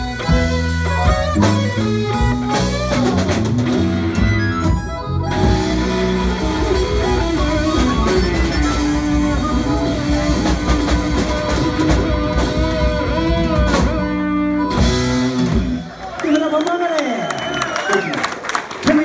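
Live blues band playing the end of a song: electric guitar, bass, drums and harmonica. The music stops about sixteen seconds in, and crowd voices and cheers follow.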